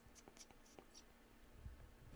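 Near silence with a few faint ticks and rustles of hands handling a cardboard box.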